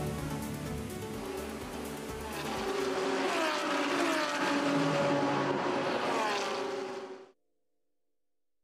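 Outro music mixed with race-car engine sounds whose pitch falls in several sweeps, like cars passing at speed. It grows louder about two and a half seconds in and cuts off suddenly near the end.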